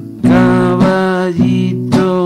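A song with acoustic guitar strummed in a steady rhythm, a chord about every half second, and a sustained melody line held over the chords.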